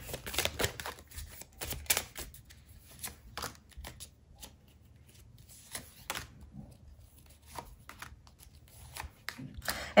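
Paper cartomancy cards being dealt and laid onto a table: a scatter of quiet slaps, slides and flicks of card stock, with a short lull near the middle.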